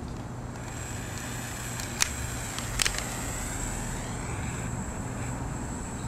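A small butane pen torch hissing as its flame burns natural-fibre bristles out of a wooden brush block. There is a sharp crackle or click about two seconds in and another cluster just under a second later, over a steady low hum.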